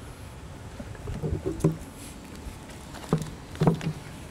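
Newspaper pages rustling as they are handled and turned, with a few short, soft sounds about a second in and near the end, over a steady low background hum.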